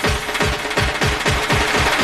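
Fast procession drumming on large street drums, evenly spaced strokes about seven a second, with a held pitched note above the beat.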